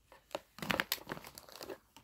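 Plastic mint-set coin case being picked up and handled: a run of crinkling and light plastic clicks, busiest about a second in.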